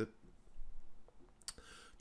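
A computer mouse click, one sharp click about one and a half seconds in, with a few fainter clicks just before it.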